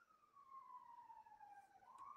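A faint siren wailing, its pitch sliding slowly down and turning to rise again near the end.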